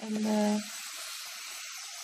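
Chopped spinach and onion frying in a pot, a steady sizzling hiss.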